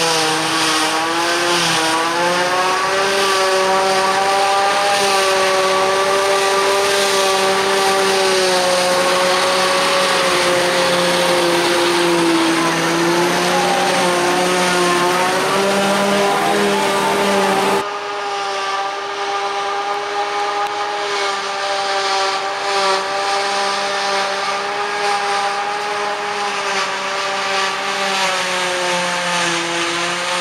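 Claas Jaguar 840 self-propelled forage harvester and the tractor alongside it running under load while the harvester chops grass and blows it into the trailer; the engine pitch wavers slightly. A little past halfway the sound cuts abruptly to a slightly quieter take of the same machines.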